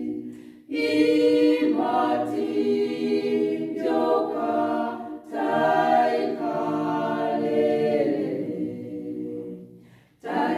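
A women's choir of six voices singing a cappella in harmony, in long phrases with short pauses for breath about half a second in and near the middle. The last phrase fades out near the end.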